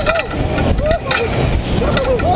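Riders on an ejection-seat ride yelling in short rising-and-falling cries over heavy wind rush on the microphone as the capsule swings.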